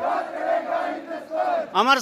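A group of marching students chanting a slogan response together, their voices blended and indistinct. Near the end a single close, loud voice starts shouting the next slogan line.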